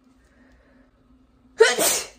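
A young woman sneezing once, loud and short, about a second and a half in.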